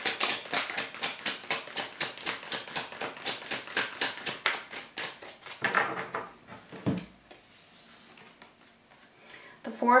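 A tarot card deck being shuffled by hand: a fast, even run of crisp card clicks that stops about six seconds in, followed by a short soft rustle of cards.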